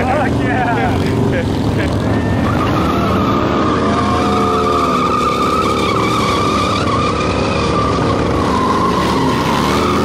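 Motorcycle burnout: an engine revving hard while a spinning rear tyre screeches on the asphalt. The steady high tyre squeal sets in about two and a half seconds in and holds, with the engine's pitch rising and falling under it.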